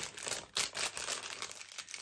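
Small paper packet of wax melts crinkling as it is turned over in the hands, in short irregular rustles.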